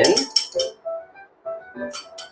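Light clinks of a glass mixing bowl as beaten eggs are poured from it into a cast iron skillet and the bowl is set down: a few quick clinks in the first second and one more near the end.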